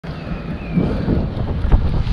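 Wind buffeting an action camera's microphone during a mountain-bike ride, a low rumble, with a heavy thump about three-quarters of the way through.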